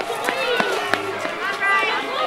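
Several overlapping, high-pitched people's voices with no clear words, and a few sharp clicks, the strongest about a second in.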